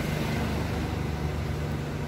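A steady low mechanical hum.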